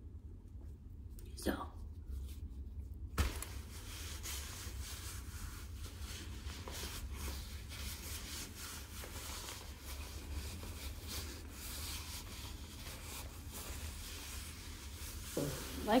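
A wipe rubbed back and forth over a life jacket's fabric shell. It is a continuous scratchy rubbing made of many small strokes, and it starts suddenly about three seconds in.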